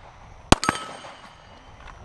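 A single handgun shot about halfway through, followed a split second later by a sharp metallic clang that rings on and fades: a bullet hitting a steel target.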